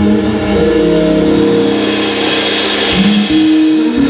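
Live band music with long, steady held notes, played between sung phrases; a brighter hiss swells in the middle and fades.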